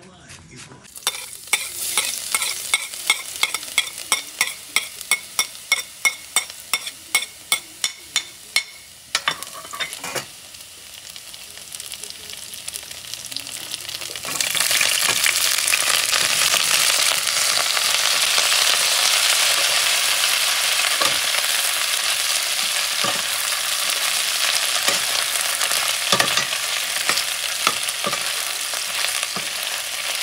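Knife chopping cabbage on a plastic cutting board, two or three strokes a second. About fourteen seconds in, sliced cabbage goes into a pan of hot oil and sets off loud, steady sizzling as it stir-fries, with occasional knocks as it is stirred.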